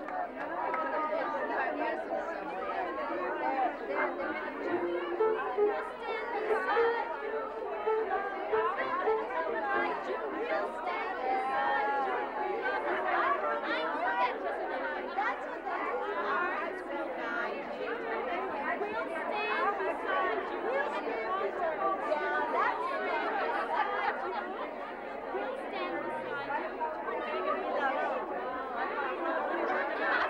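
Many women talking at once in a room, a steady hubbub of overlapping conversation.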